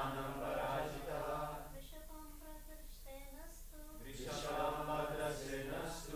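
A congregation chanting a Sanskrit scripture verse in call and response: a single voice leads each line and many voices repeat it, louder. The group answers twice, in the first two seconds and again near the end, with the lead voice between.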